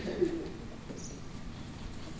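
A brief low voiced murmur, sliding in pitch, right at the start, then the steady low background noise of a large hall with a seated audience.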